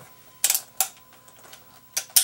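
Sharp metallic clicks of a single-action revolver's hammer being worked while the gun sits in a leather holster: a quick pair about half a second in, another just under a second in, and one more near the end.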